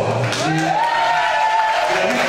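An announcer's voice over the hall's public-address speakers, drawing one call out into a long held note, over faint crowd noise and light applause.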